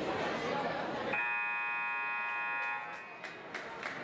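Gymnasium scoreboard buzzer sounding one steady electronic blare for about a second and a half over crowd chatter, marking the end of a timeout. A few sharp knocks follow near the end.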